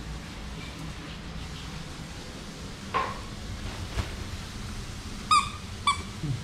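Basenji fetching a red plush toy on a tiled floor. It is mostly quiet, with a brief chirp about three seconds in, a single knock about a second later, and two short high-pitched squeaks near the end.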